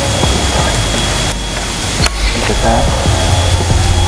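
High-pressure air compressor running steadily, a loud even hiss with a low rumble and a faint high whine. Two short sharp clicks come about a second and two seconds in.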